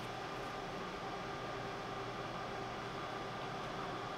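Steady fan-like hiss with a few faint constant tones in it, an even machine background that does not change.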